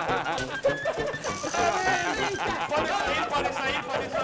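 Voices talking and calling out over background music, with no single other sound standing out.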